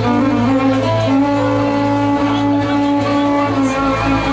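Amplified violin playing a slow melodic line of long held notes, part of a live gambus ensemble with a steady bass underneath.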